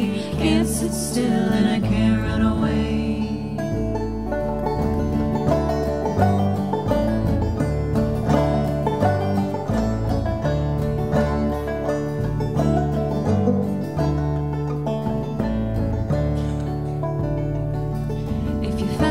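Live acoustic string trio playing an instrumental passage: picked banjo over upright bass notes and a strummed acoustic guitar, with a steady bluegrass-style beat.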